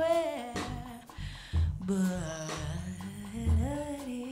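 A woman's wordless humming or singing, with gliding, wavering pitch, over a live jazz piano trio with bass and drums underneath.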